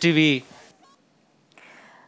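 The last syllable of a spoken word, drawn out and falling in pitch for about half a second. Near silence follows, then faint hiss about halfway through.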